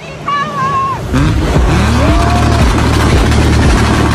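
Toyota Supra MK4's 2JZ straight-six engine revving, loud from about a second in, with rising pitch sweeps, over a music track with a steady bass beat.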